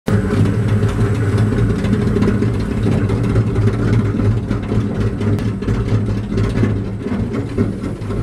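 Industrial paper shredder running with a steady low motor hum while its cutters tear through paper and catalogues, a dense crackle over the hum.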